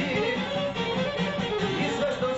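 Instrumental passage of a folk song: plucked, guitar-like string instruments playing with a wavering melody line carried over them.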